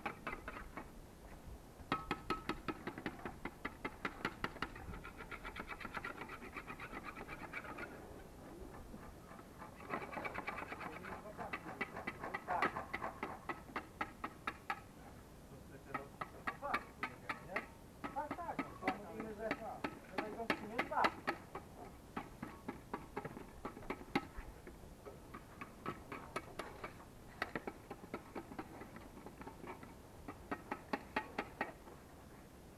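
Background music with a steady beat, about two beats a second, with a voice running over it.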